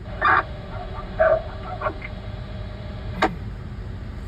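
A dog barks three times in short barks within the first two seconds. A single sharp click comes near the end.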